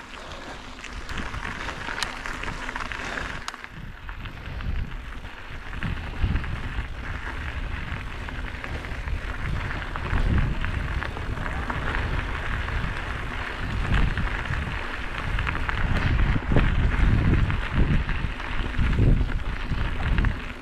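Mountain bike tyres rolling over a gravel-and-dirt singletrack, a steady gritty hiss with scattered rattles and clicks from the bike. Low rumbling gusts of wind on the microphone come and go, growing stronger in the second half.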